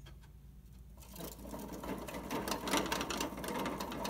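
Plastic hamster exercise wheel spinning fast under a running hamster: a rapid, continuous clicking rattle that starts about a second in and grows louder.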